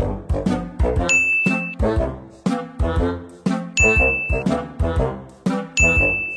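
Upbeat background music with brass and a steady beat, with three short, high message-notification dings: one about a second in, one near four seconds and one at the very end, each marking an incoming chat message.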